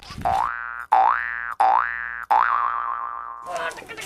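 Cartoon-style 'boing' comedy sound effect: four rising, springy tones in quick succession, the last one held and then fading out.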